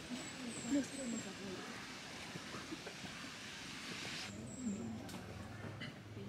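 Quiet background with faint, hushed voices murmuring over a steady hiss; the hiss stops abruptly about four seconds in. A thin, high whistling tone comes twice, briefly.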